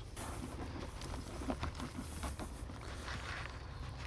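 Faint rustling with a light scatter of small ticks: potting soil being poured into a cellular PVC window box and spread by hand.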